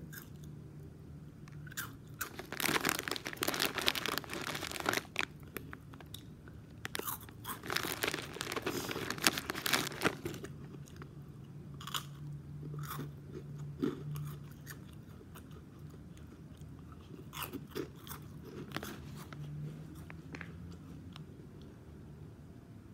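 Close-up biting and chewing of a crunchy pickle. Two spells of loud crunching in the first half are followed by quieter, scattered chews and mouth clicks.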